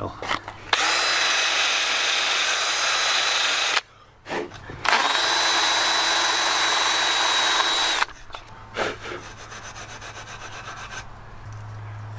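Electric drill with a wire brush scouring rust and old paint off a cast iron downpipe hopper, in two steady runs of about three seconds each with a short stop between, a thin high whine running through the scraping.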